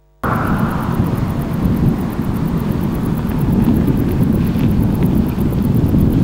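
Steady outdoor rumble of road vehicles with wind on the microphone, starting abruptly about a quarter second in.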